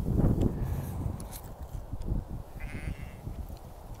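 A sheep bleating, a short call about two-thirds of the way in, over low rumbling noise that is strongest at the start.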